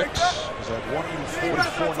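Men talking, courtside trash talk and broadcast voice, with a couple of short low thuds in the background.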